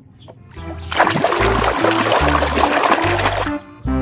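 Water splashing and running as a paint-covered plastic toy crocodile is washed, starting about a second in and stopping about half a second before the end, over background music with a low beat.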